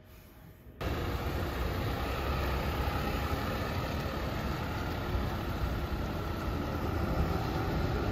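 Large tour coach driving slowly past, its engine running steadily with road noise, coming in suddenly about a second in.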